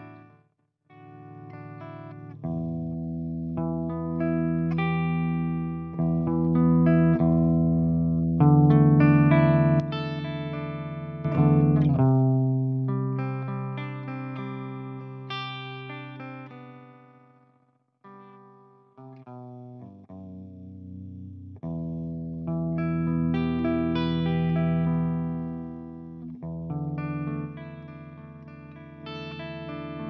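Clean electric guitar chords, strummed every few seconds and left to ring, played through a Mesa Engineering Boogie Five-Band Graphic EQ pedal into a Fractal Audio Axe-FX III clean amp model while the pedal's EQ sliders are adjusted. There are short breaks near the start and again about eighteen seconds in.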